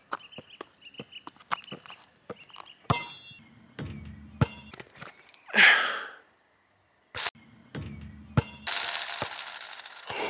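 A basketball being dribbled on an outdoor asphalt court: a string of sharp bounces in the first three seconds or so. A loud breathy rush of air about halfway and a hiss of noise near the end.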